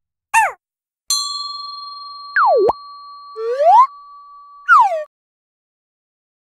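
Cartoon sound effects: a bell ding about a second in that rings on for several seconds, with quick pitch swoops laid over it: one that drops and shoots back up, then a rising one, then a falling one. A short falling chirp comes just before the ding.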